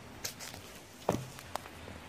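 A few soft clicks and knocks from a hand-held phone camera being handled and moved, the strongest just after a second in, over a faint steady background.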